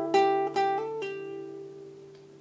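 Takamine Hirade nylon-string classical guitar played slowly: a few plucked treble notes over a held D bass note, with a hammer-on and pull-off on the B string around a second in, then the chord rings on and fades away.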